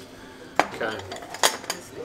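Utensils clinking against dishes as soup is served out at the table: two sharp clinks, about half a second in and again near a second and a half, with a lighter tap just after.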